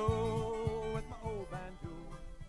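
Country song ending and fading out: the singer holds a last note for about a second over strummed acoustic guitar and bass. The band keeps the beat while the whole mix grows steadily quieter.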